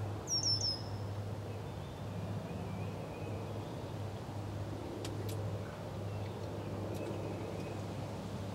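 A small songbird gives three quick, high, falling chirps about half a second in, over a steady low background hum.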